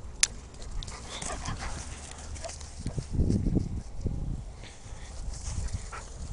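A hound dog making short low vocal sounds, the clearest about three seconds in, with a fainter one about a second in, over low rustling.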